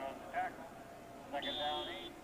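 Indistinct male voices on a television football broadcast, in two short stretches with a quieter gap between them.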